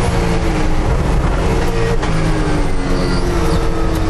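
Onboard sound of a race car's engine running hard, its pitch drifting up and down as the driver works the pedals.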